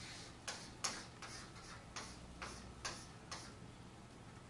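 Chalk on a blackboard: about eight short, unevenly spaced strokes and taps as lines are drawn.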